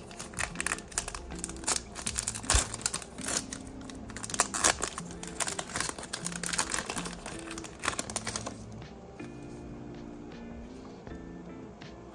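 Foil trading-card pack being torn open and crinkled in gloved hands, a dense run of quick crackles that stops about eight and a half seconds in. Quiet background music with held notes plays under it.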